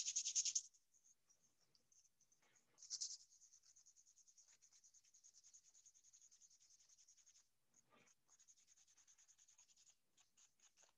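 Faint sandpaper strokes rubbing across a small disc, smoothing its surface so paint will adhere, with one louder scrape about three seconds in.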